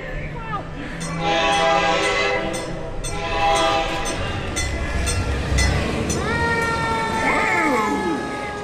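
Train horn sound effect at a ride's railroad-crossing scene: two long chord blasts, a deep rumble about five seconds in, then a held horn chord that slowly drops in pitch, like a train passing.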